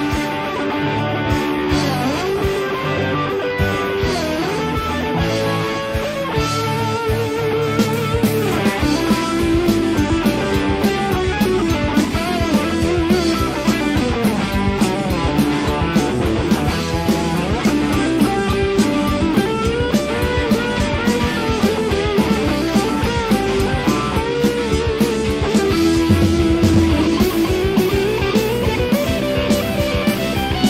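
Instrumental passage of a rock song: distorted electric guitar playing a lead line with wavering, bent notes over bass and drums, the drums getting busier about eight seconds in.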